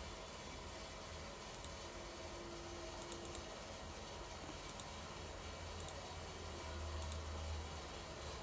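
Faint room tone with a low hum and a few faint, scattered computer-mouse clicks.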